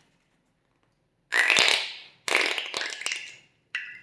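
Slime and air being squeezed out through the neck of a slime-filled rubber balloon, spluttering wetly in three bursts, the last one short.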